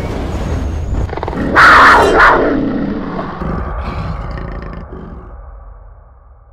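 Big-cat roar sound effect over a low rumble: the roar comes in loud about one and a half seconds in, peaks twice, then trails off in a long fade.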